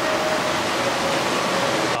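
Steady rush of a water cascade spilling over rocks into a pond.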